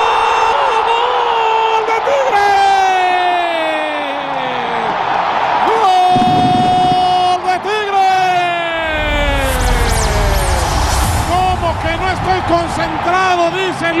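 Spanish-language TV football commentator's drawn-out goal call, "¡Gooool!", held for several seconds at a time with the pitch sliding down, given in a few long stretches over the stadium crowd's noise.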